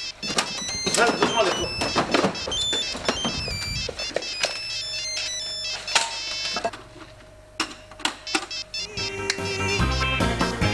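A mobile phone ringtone playing a song with singing, left ringing unanswered. About halfway through it drops to a quieter stretch held on one steady tone, and the music comes back up near the end.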